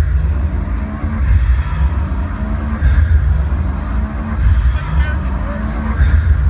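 Live concert music through a stadium sound system, heard from the crowd on a phone: very heavy bass kicks in just as it begins, with a rising bass slide that repeats about every one and a half seconds.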